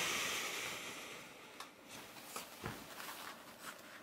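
Faint rustling of denim jeans being handled, fading over the first second or so, followed by a few light clicks and taps.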